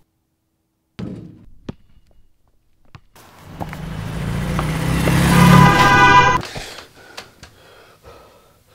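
A thud about a second in, then a car coming on fast, getting steadily louder and ending in a loud shrill squeal that cuts off suddenly.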